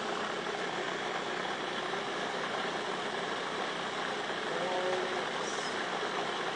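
Electric food processor motor running steadily, its blade mixing a wet batter of tomato, yellow pepper and flaxseed meal.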